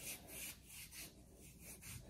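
Palm rubbing moisturizer into the skin of a forearm and elbow: faint, soft skin-on-skin swishes repeating about three times a second.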